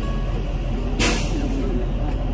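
Coach engine idling with a steady low rumble, and a short hiss of released air, like an air brake, about a second in.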